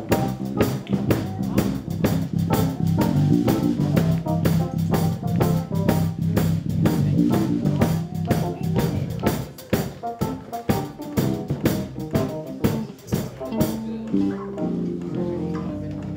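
A live band plays: electric guitar, keyboard, electric bass and a Pearl drum kit keep a steady beat over sustained low notes. Near the end the drums drop out, leaving a held chord.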